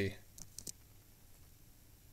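A few quick clicks of a computer mouse and keyboard about half a second in, then faint room tone.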